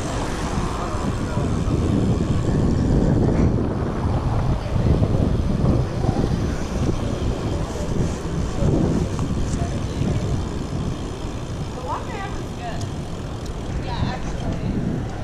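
Low, fluctuating rumble of wind buffeting a handlebar-mounted action camera and tyre noise from a BMX bike riding along a street, mixed with nearby car traffic.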